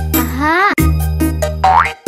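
Upbeat children's song backing music with a steady bass line and beat. Over it come two rising, whistle-like cartoon sound effects: a wavering one about half a second in and a quick one near the end.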